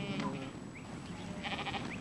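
A mob of sheep bleating: one call at the start and another about one and a half seconds in.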